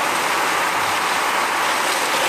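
Steady rushing noise of a fire hose stream spraying, with the fire engine's pump running.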